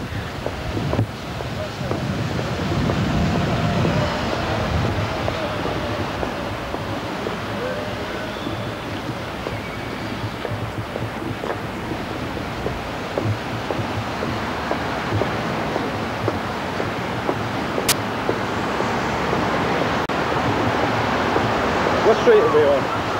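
Steady city street noise of traffic, picked up by a 1980s camcorder's microphone, with one sharp click about eighteen seconds in.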